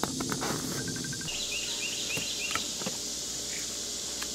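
Steady high insect drone, with a bird calling a quick run of short falling chirps from about a second in until past the middle. A few faint clicks near the start.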